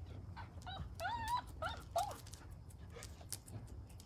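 A dog whining in several short, high-pitched whimpers, bunched between about half a second and two seconds in.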